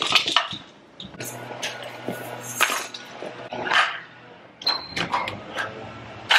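Plastic baby toys clattering and rattling as they are picked up and dropped into a wicker basket, a string of short knocks about a second apart.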